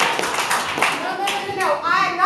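Theatre audience laughing and clapping after a punchline, the applause dying away about a second in.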